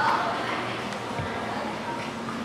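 Indistinct voices of people talking nearby, with no words clear enough to make out.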